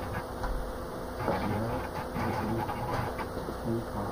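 Room tone with a steady faint electrical-sounding hum, and indistinct voices in the background now and then.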